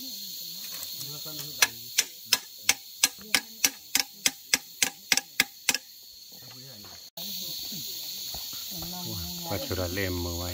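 Sharp knocks as the metal blade on the tip of a bamboo pole is hammered, about fourteen strikes at roughly three a second that stop about two-thirds of the way through. A steady high drone of insects runs underneath, and voices come in near the end.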